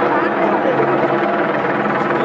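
People's voices over a steady, low droning hum.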